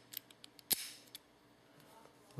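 A handful of light, sharp clicks and taps from an antique porcelain push-button light switch and its parts being handled, the loudest about three quarters of a second in, then quiet.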